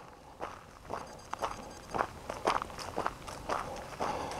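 Footsteps walking on a grassy dirt trail, about two steps a second.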